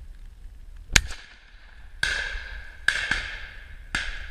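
A single shotgun shot from a Browning 525 over-and-under about a second in, with a short echo after it. It is followed by three longer rasping noises that start suddenly about a second apart.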